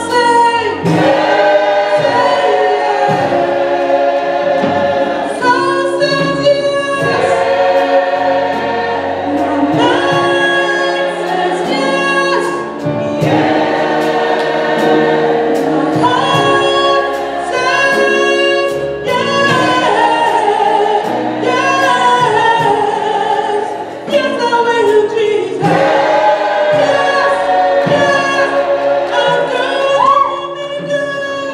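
Mixed gospel church choir of men and women singing, in phrases of a few seconds with held notes.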